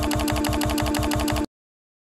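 A short pitched snippet of audio looped rapidly, about ten repeats a second, giving a stuttering, machine-gun-like buzz over a steady tone. It cuts off abruptly about a second and a half in, into dead silence.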